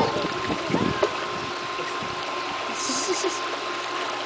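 Water splashing and lapping in a small pool as people move in it, with a brief sharper splash about three seconds in, over a steady hum from the pool's pump.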